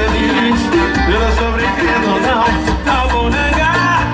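A live band playing Brazilian dance music: electronic keyboard and electric guitar over a repeating bass line, with a voice singing.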